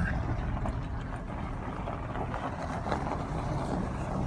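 Car driving slowly, with steady tyre and engine noise heard from inside the cabin.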